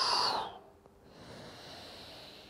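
A man's audible breath: a strong rush of air that ends about half a second in, followed by a fainter, longer breath.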